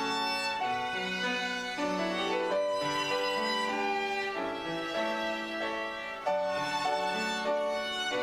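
Instrumental music: a violin playing a melody of held notes over a lower accompaniment.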